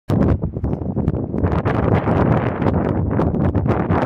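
Wind buffeting and rumble on the microphone, with irregular knocks and clicks from the recorder being handled.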